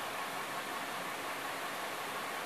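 Steady background hiss, room tone with no distinct sounds standing out of it.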